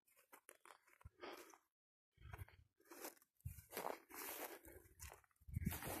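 Footsteps crunching on dry grass and leaf litter at a walking pace, quiet and irregular, about two steps a second.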